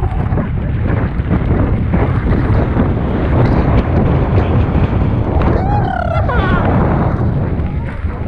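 Wind buffeting the microphone of a mountain biker riding fast, a steady heavy rumble throughout, with a short shout about six seconds in.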